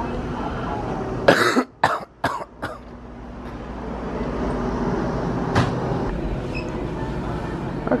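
Steady hum of a convenience store's coolers and ventilation, broken about a second in by a quick run of four or five short, sharp sounds, with another single one a few seconds later and a cough at the very end.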